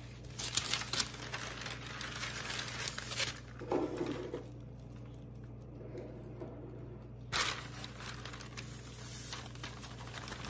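Parchment paper crinkling and rustling in short crackles as it is handled and folded into a funnel, with a sharp tap about seven seconds in and a quieter stretch just before it.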